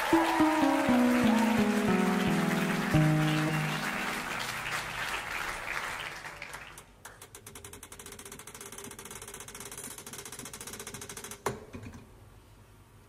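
Live stage music: a descending run of held, ringing notes over fading crowd noise. After about six seconds it drops to a quiet stretch of fine, rapid clicking.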